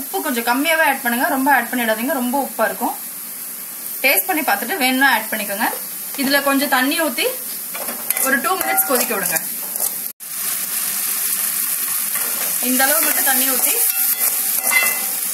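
Thick masala gravy sizzling in a hot kadai as it is stirred, a steady frying hiss. A voice talks over it for most of the first nine seconds. After a sudden break about ten seconds in, the sizzling goes on alone.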